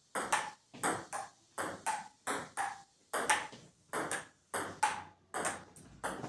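A table tennis rally: a celluloid ball clicking off paddles and the table in a quick, steady rhythm, about three sharp clicks a second, often in close pairs.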